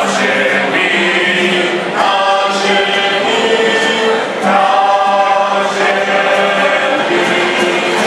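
Small mixed choir of men's and women's voices singing a Christmas carol in long held notes.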